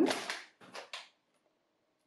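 A plastic packet of nuts crinkling as it is picked up off the counter: a few short crinkles within the first second.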